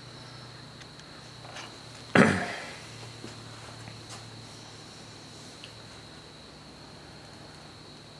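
A homemade pulse motor running quietly on its run capacitors: a steady low hum with a faint, steady high whine. One brief louder noise about two seconds in.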